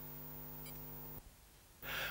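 A low, steady hum made of several even tones. It cuts off abruptly a little after a second in, leaving near silence.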